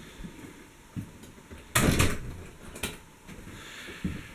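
A door being shut: a loud rush about two seconds in, followed just under a second later by a sharp click as it latches, with a few soft knocks before.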